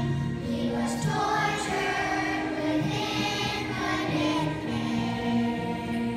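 Children's choir singing together, with long held notes.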